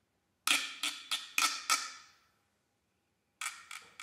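Sharp strikes on a wood block: a quick run of five pitched knocks about half a second in, ringing off over a second. After a pause, a second quick run of knocks starts near the end.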